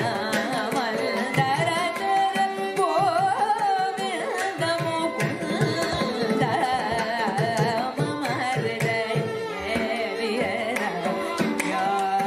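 Carnatic kriti performance: a female voice singing with two violins following her melody, while mridangam and ghatam play a dense stroke pattern in Khanda Triputa tala.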